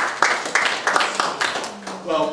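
A small group of people applauding with their hands, the claps thinning out and dying away toward the end.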